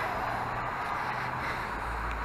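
Steady outdoor background noise: a low, even rumble of road traffic with no distinct events.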